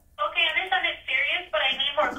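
Speech from a recorded 911 emergency call played back, with the thin, narrow sound of a telephone line.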